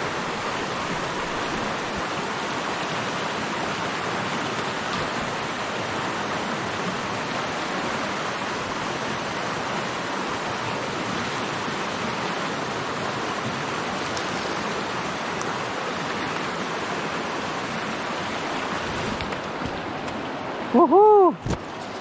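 Steady rushing of river water flowing below an old log footbridge; a man's voice breaks in briefly near the end.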